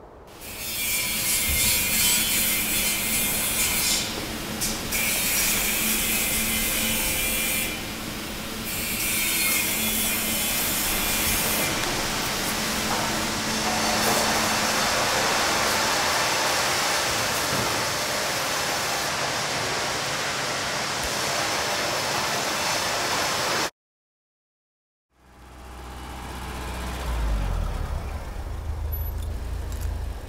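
Loud, harsh machine-shop noise with a hissing high layer that cuts in and out three times in the first twelve seconds. It stops abruptly, and after about a second and a half of silence a car engine's low rumble fades in.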